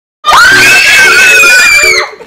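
Young women screaming in excitement: a very loud, shrill, sustained scream that starts abruptly about a quarter second in and holds a high, nearly steady pitch.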